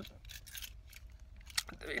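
A mostly quiet pause with a few faint, short clicks, one sharper click shortly before speech starts again near the end.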